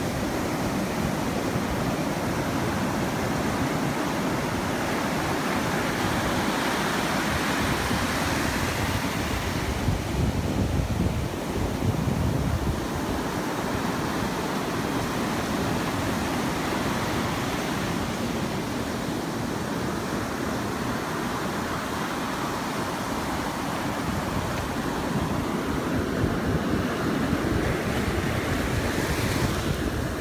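Ocean surf washing in over the shallows in a continuous rush of water, swelling a little about ten to twelve seconds in.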